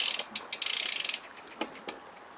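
Bicycle rear-hub freewheel ratchet clicking rapidly as the bike coasts. The clicking stops about a second in, leaving a few scattered clicks.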